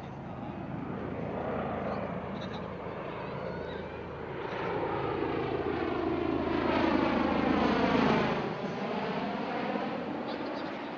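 Bell Boeing MV-22 Osprey tiltrotor on a low pass, its two proprotors and turboshaft engines getting louder as it approaches. It is loudest about 8 seconds in as it passes overhead, then the pitch drops and the sound eases off.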